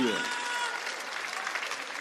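Live studio audience applauding, a steady clatter of clapping.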